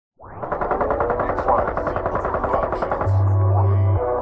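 Rapid automatic gunfire sound effect, a fast, even run of shots, giving way about three seconds in to a loud sustained deep bass note.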